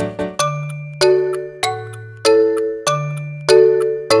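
Chiming clock-bell strikes in a children's song's music, a ding-dong about once a second, each note ringing out and fading over a held low bass note.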